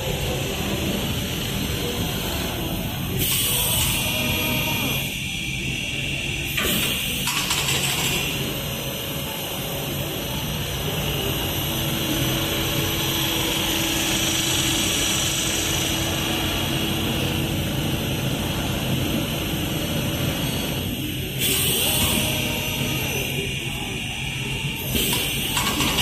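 A Richpeace RP-3A automatic mattress tape edge machine running: a steady motor hum under a higher steady whine from its sewing head, broken by about four short, louder bursts of noise.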